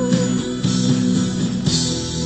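Guitar accompaniment at the close of a pop song cover. A woman's held sung note, with vibrato, ends just after the start and leaves the guitar chords ringing on.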